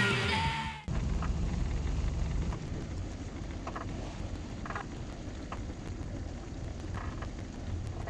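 Background music cuts off about a second in. What is left is a steady low rumble from the sailboat underway, a little louder for the first couple of seconds and then settling lower.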